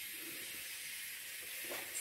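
Quiet background with a steady faint hiss and no distinct event.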